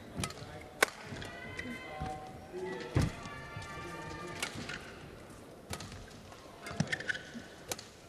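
Badminton rally: about six sharp cracks of rackets striking the shuttlecock, spread a second or so apart, the loudest about three seconds in. High-pitched squeaks of court shoes on the mat sound in between.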